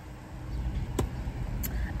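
Low, steady rumble inside a car's cabin, with one sharp click about halfway through.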